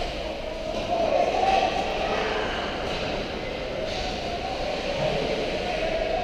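Steady rumbling noise of an indoor ice hockey rink during play, picked up through the glass behind the net, with faint voices in it.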